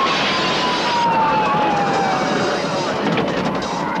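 Film trailer soundtrack of action sound effects: a loud, dense roar with a whistling tone that slides slowly down in pitch over the first two seconds.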